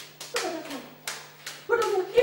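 Quick footsteps clicking on a hard floor, about three a second, with a short falling vocal sound about a third of a second in; a voice starts speaking near the end.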